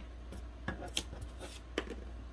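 Faint handling sounds: a few light ticks and rubs as jute twine is pulled and wrapped around a metal wire wreath frame, over a steady low hum.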